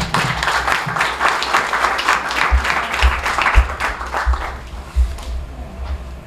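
Audience applauding, dense clapping that thins out and fades after about four seconds, with a few low thumps toward the end.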